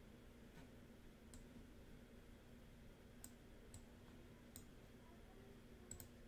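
Near silence broken by about six faint, sharp clicks spread over a few seconds, typical of a computer mouse being clicked.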